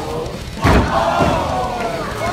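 A wrestler comes off the top rope and lands with a thud on the ring mat a little over half a second in, and the crowd shouts and cheers around it.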